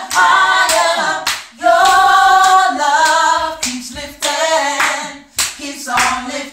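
Gospel quartet of mixed voices singing a cappella in harmony, with handclaps sharply marking the beat throughout.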